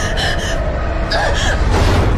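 Two sharp, breathy gasps, one right at the start and one about a second in, over a loud, steady low rumble of horror-trailer sound design.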